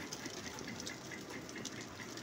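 Egg-and-milk-soaked bread (French toast) frying in butter in a nonstick pan: a steady, quiet sizzle with fine crackling.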